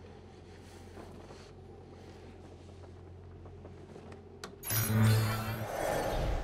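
Low steady electronic hum, then near the end a sudden loud sci-fi electronic surge with a deep buzz and a hiss, lasting about a second: the sound effect of the virtual reality rig kicking in.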